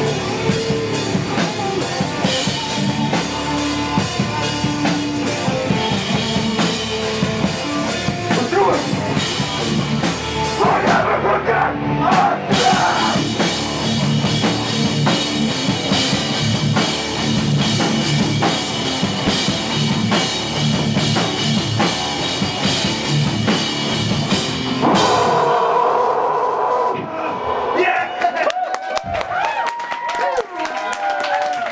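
Loud live rock band playing: drum kit, electric bass and shouted vocals, with a brief break about eleven seconds in. The band stops about 25 seconds in, leaving a ringing tone and voices.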